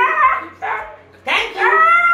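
Siberian Husky 'talking': about three drawn-out, howl-like calls in quick succession, bending up and down in pitch, the last one longer.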